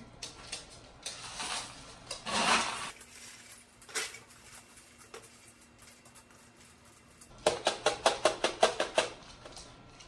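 Expanded clay pebbles (LECA) being filled in and worked around a plant's roots in a nursery pot: soft rustling and an odd clink, then near the end about two seconds of quick rattling clicks, roughly eight a second, as the pebbles clatter in the pot.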